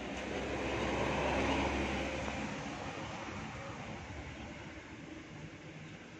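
A vehicle passing by with a low rumble and a rushing hiss, swelling to its loudest about a second and a half in and then slowly fading away.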